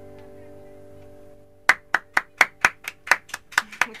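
The last strummed chord of an acoustic guitar ringing out and fading away, then, about a second and a half in, sharp hand claps at about four a second.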